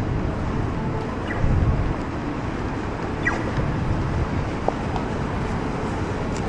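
Steady city street noise at a road crossing: a continuous low traffic rumble, swelling briefly about one and a half seconds in, with a few faint short chirps and blips.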